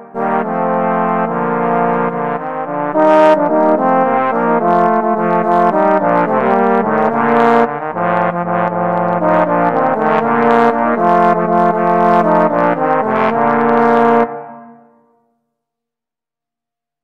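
Trombone trio playing the closing bars of a sea shanty, three parts in a steady rhythm of short notes, ending on a chord that stops about fourteen seconds in and dies away.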